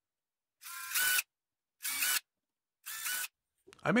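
Cordless drill with a fine bit drilling component holes through an etched copper circuit board: three short runs of the motor, each about half a second with a high whine, separated by silent pauses.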